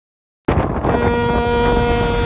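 A ship's horn sounding one long, steady note over a low rumble, starting abruptly about half a second in.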